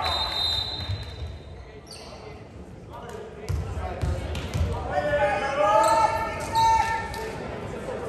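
A volleyball bounced about four times on the hardwood gym floor, with a hollow echo in a large hall. Players' voices call out after the bounces. Near the start a steady high whistle sounds for about two seconds.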